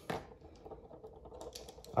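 Quiet room tone in a pause, with a few faint, light clicks and taps.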